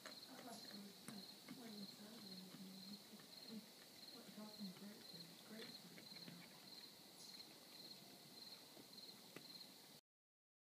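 Faint, scattered crunches and clicks of an American black bear chewing acorns, over an insect chirping steadily about twice a second.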